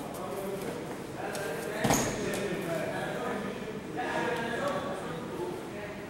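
A body thumps onto a padded mat about two seconds in, as a grappler rolls through from the turtle position, with scuffling on the mat and low indistinct voices around it.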